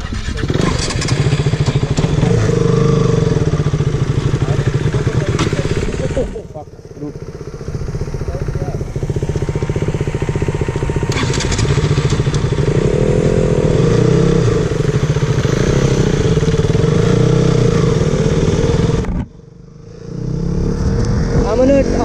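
KTM RC sport motorcycle's single-cylinder engine running under way with throttle changes, the revs climbing about halfway through. The sound drops away abruptly twice, about six seconds in and near the end.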